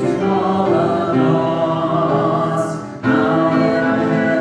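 Voices singing a hymn with upright piano accompaniment; one phrase ends about three seconds in and the next begins.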